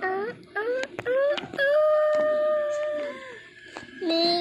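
Domestic cat meowing repeatedly: four short rising meows in quick succession, then one long, level meow, with a few sharp clicks along the way.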